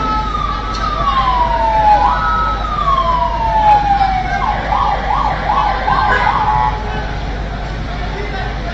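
An emergency vehicle siren: two slow wails, each rising quickly and then sliding slowly down, then switching to a fast yelp of rapid up-and-down sweeps about halfway through.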